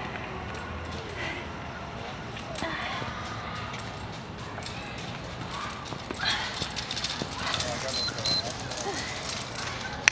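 Faint distant voices in the background, and from about six seconds in, a quick run of taps and thumps as sneakers and hands strike a rubber exercise mat on brick paving during a fast HIIT move.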